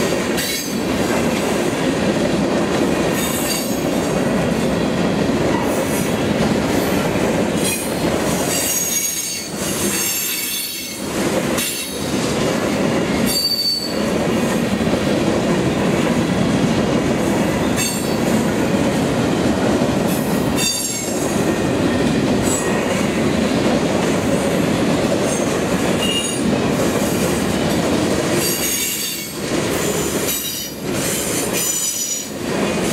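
Freight cars rolling past close by: a steady, loud rumble of steel wheels on the rails, with short high-pitched wheel squeals coming and going every few seconds.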